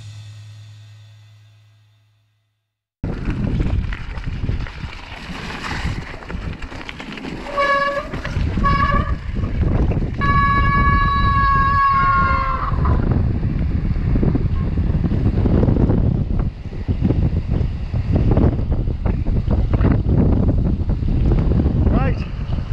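Background music fading out, then a moment of silence. From about three seconds in, wind buffets the microphone over the rough noise of a mountain bike riding a wet, stony track. A few seconds later there are two short high squeals, then a longer, steadier squeal that cuts off after about two and a half seconds.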